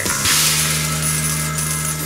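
Loud, steady din of a busy pachinko parlor: a dense, hissing clatter of many machines and their steel balls, with a low steady drone of music underneath.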